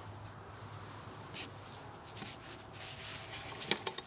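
Faint scratching and rustling of dry leaves, twigs and soil being cleared from a wisteria's root ball, with a few sharper clicks and scrapes near the end.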